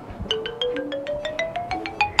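Comic musical sound effect: a quick run of bright struck notes over a tone that climbs steadily in pitch, ending on a higher held note.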